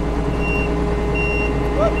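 Claas Lexion 460 combine harvester's reversing alarm beeping, a short high beep repeated a little more often than once a second, over the steady running of the combine's engine as it backs on the low loader.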